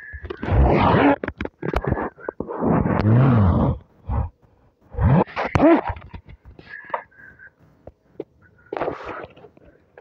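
A man's voice making wordless, breathy sounds in several bursts, a couple of them voiced with a pitch that rises or rises and falls.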